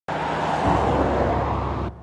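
Loud diesel truck exhaust noise from an International 9900i with a Cummins ISX engine, a dense roar over a low engine note. It cuts off suddenly near the end, leaving a quieter steady engine tone.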